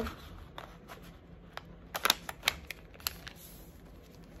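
A square of origami paper being folded and creased by hand: soft rustling with a handful of sharp crackles, the loudest about two seconds in.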